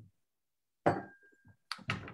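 A single sharp knock on a glass about a second in, leaving a brief high ringing tone, followed by a couple of sharp clicks near the end.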